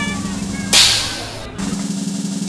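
Stage smoke-effect machine blasting: a sudden loud hiss of gas about two-thirds of a second in, fading over most of a second, over a steady low hum.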